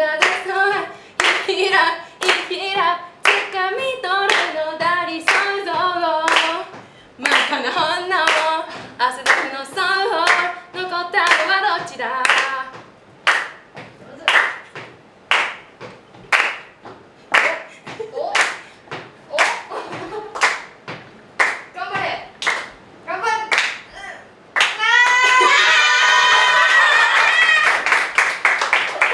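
Women singing Japanese pop lyrics a cappella over a steady hand-clapping beat, about two claps a second. Near the end the clapping gives way to a loud burst of shrieking and laughter from several women.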